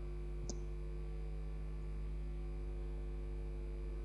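Steady electrical mains hum on the broadcast audio, with a single faint click about half a second in.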